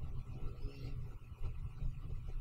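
Low steady background hum and room noise from the recording, with no distinct sound event.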